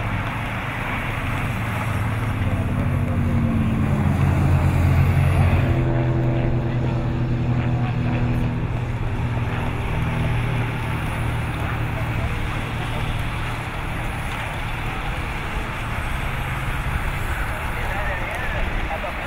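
Engines of the race convoy's escort motorcycles and follow cars passing with the bicycle pack as a low steady hum, swelling loudest about four to five seconds in, over a broad rushing background.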